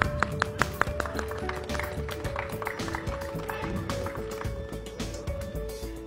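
Music playing, with held notes that step from one pitch to the next, and a few sharp percussive hits in the first second.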